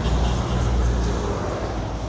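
A steady low engine rumble with a wash of motor-vehicle traffic noise.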